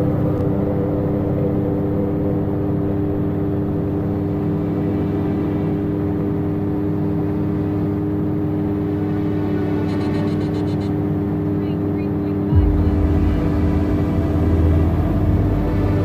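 Steady drone of a Calidus gyrocopter's Rotax flat-four engine and pusher propeller in cruising flight, heard from the open cockpit. A deeper, louder low rumble comes in suddenly about three quarters of the way through.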